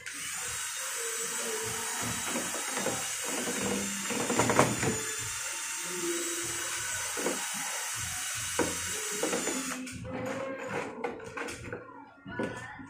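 Cordless drill with a mixing bit running steadily, stirring a thick cement-like mix in a plastic cup. It stops about ten seconds in, followed by a few short knocks and scrapes.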